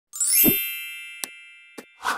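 Intro sound effect: a bright, ringing chime over a low thud, fading away over about a second and a half, then two short clicks.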